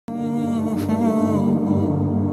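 Wordless vocal intro music: humming voices hold a drawn-out melody, starting abruptly at the very beginning.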